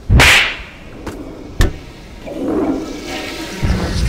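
Animation sound effects: a loud whip-like swoosh at the start, two sharp clicks, then a swirling rush of noise that builds toward the end.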